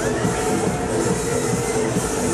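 Large fairground pendulum ride running, its machinery giving a steady rumble and hum, with fairground music mixed in underneath.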